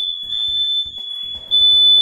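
Smoke alarm sounding a shrill, steady high-pitched tone, set off by oil heating in a pan on the stove.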